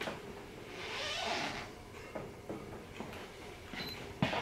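Quiet handling noise from a small camera being panned and moved on its tripod: a soft rustling hiss about a second in and a few faint clicks.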